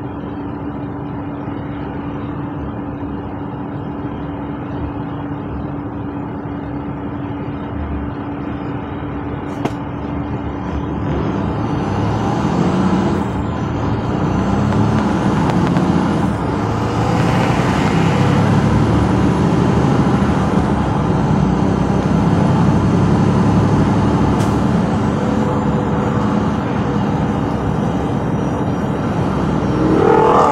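A truck engine idles steadily with road noise, heard from inside the cab. About twelve seconds in, the truck pulls away and the engine note climbs and drops in steps as it accelerates through the gears, growing louder.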